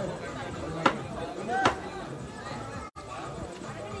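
Background voices of cricket spectators chattering, with a single sharp knock about a second in and a short, bending call shortly after.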